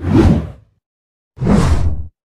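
Two whoosh sound effects of an animated logo intro, each swelling and fading within under a second with a deep low rumble beneath; the second starts about a second and a half in.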